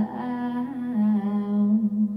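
Background song: a voice humming long held notes, stepping down to a lower note about a second in.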